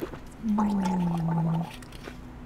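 A man's drawn-out throaty groan after downing a shot of liquor. It starts about half a second in, lasts about a second, and sinks slightly in pitch.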